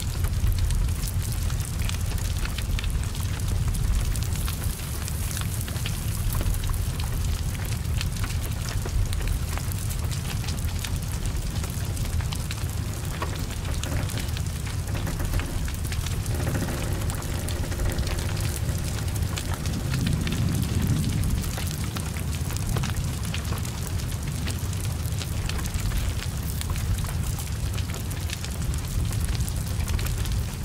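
Heavy rain falling steadily over the low rumble of a burning car, with many small crackles throughout.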